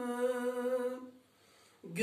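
A man's unaccompanied voice humming one long, steady note of a Turkish ilahi (hymn). The note ends about a second in, and after a short breath pause he comes back in just before the end.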